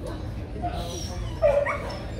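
An H'Mông bobtail dog gives one short, loud yelp about one and a half seconds in, a whining cry that rises in pitch, while it is being held up for a teeth check.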